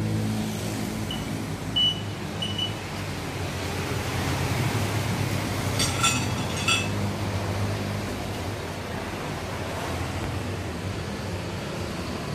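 Short electronic beeps from a Kernel DTI-F digital tyre inflator: three quick high beeps in the first few seconds and a few more about six seconds in, over a steady low rumble of traffic.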